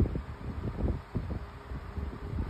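Low, uneven rumbling with soft knocks: handling noise on a phone's microphone, with a few faint rustles.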